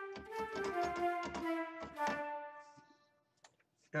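Sampled orchestral flute playing a quick run of staccato notes, about five a second, from an East West Quantum Leap flute staccato patch. The run stops a little past halfway and its reverb tail fades out.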